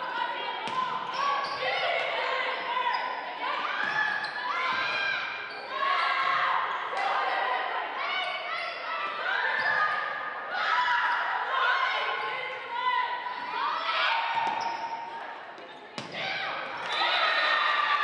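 Athletic shoes squeaking on a hardwood gym floor as players move through a volleyball rally, many short chirping squeaks overlapping, with a few sharp slaps of the ball being hit, in a large gymnasium.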